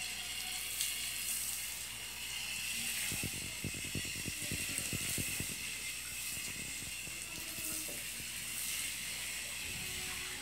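Garden hose spraying water in a steady hiss. A quick run of low fluttering thumps comes in from about three seconds in and lasts a couple of seconds.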